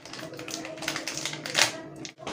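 Plastic packet being handled and opened, a quick run of crinkles and small clicks with one louder click about one and a half seconds in.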